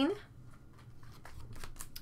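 Trading cards being slid one behind another in the hand: faint soft scrapes of card on card, with a few light flicks in the second half.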